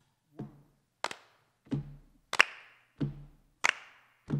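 Hand claps alternating with low thumps in a steady beat, about one clap every 1.3 seconds. It is body percussion counting in the tempo for an a cappella song.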